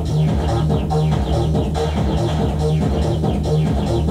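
Roland MC-303 Groovebox playing an electronic dance pattern of drums and a repeating bass line, with the filter cutoff on part two being turned by hand to change that part's tone.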